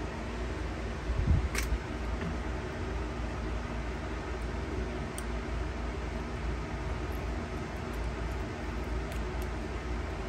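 Steady low background hum, with a brief rustle about a second in and a few faint clicks as small acrylic pieces are handled and peeled with a metal tool.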